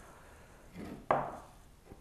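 A glass aftershave bottle set down on a table: a soft handling sound, then one short knock about a second in.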